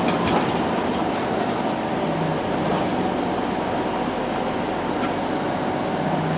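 Ride inside a TTC CLRV streetcar in motion: steady running noise of the car on its rails, with a few clicks about the first half-second.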